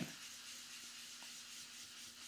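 Faint, steady rubbing of a dome foam ink blending tool being worked over cardstock, blending dye ink onto the paper.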